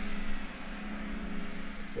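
Steady background hiss with a constant low hum: room tone with no distinct event.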